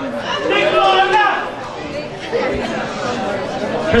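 Only speech: several people talking and chattering at once.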